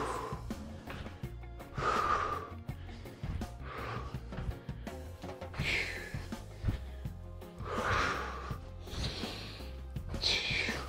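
Background music with a steady bass line, over a man's hard breathing during lunge jumps: a forceful breath about every two seconds, with light thuds of his feet landing.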